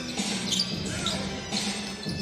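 Live basketball game sound: a ball being dribbled on a hardwood court, with a few sneaker squeaks and music playing in the background.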